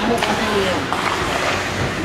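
Indistinct chatter of spectators' voices in an ice arena's stands, over the rink's steady background noise, with one sharp knock about a quarter second in.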